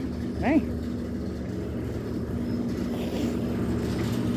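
A steady low mechanical hum, a few unchanging tones held without a break, with a short called "hey" about half a second in.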